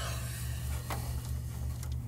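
Hand handling a braided power-supply cable inside a PC case, gripping it to unplug it from the motherboard's 8-pin power socket. Quiet rubbing and handling noise with one light click about a second in, over a steady low hum.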